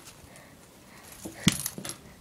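Handling of a fabric Smiggle zipper pencil case with metal zipper pulls: quiet at first, then a short clatter with a sharp knock about one and a half seconds in as it is put down, with a brief jingle of the pulls.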